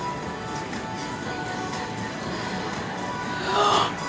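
Music playing from a display computer's speakers over the store's background noise, with a brief louder burst near the end.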